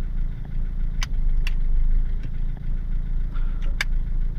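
Car engine idling steadily, heard from inside the cabin, with a few sharp clicks about a second in, half a second later, and near the end.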